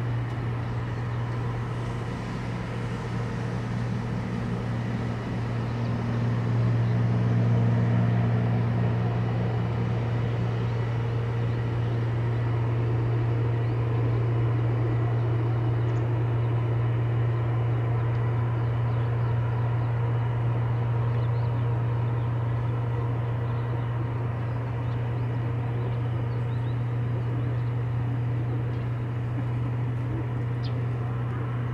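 A steady, low mechanical drone with a constant hum, swelling slightly a quarter of the way in and then holding level.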